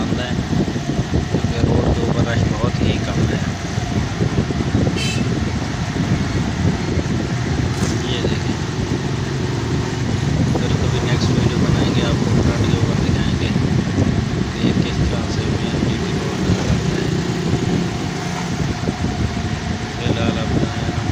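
Steady engine and road noise of a small motor vehicle, heard from aboard as it drives along the street.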